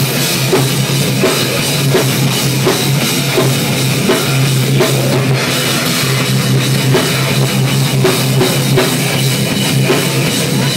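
Loud live metal band: a drum kit pounding with crashing cymbals under distorted electric guitar, over a low note held through most of the stretch.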